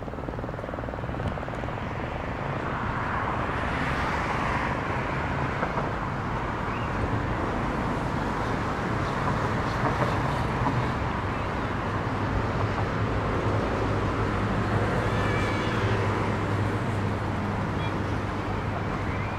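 Busy city street ambience of traffic noise that swells about three seconds in as a vehicle passes, then settles into a steady wash with a low engine hum growing stronger in the second half. A brief high-pitched sound comes near the end.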